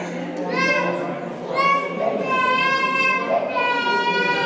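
A baby crying: a run of high-pitched wails, each about a second long, one after another.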